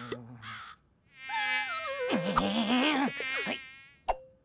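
A cartoon character's high, nasal, buzzing whine that slides down in pitch, then wavers lower and fades out near the end.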